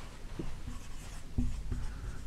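Dry-erase marker writing on a whiteboard: a series of faint, short strokes.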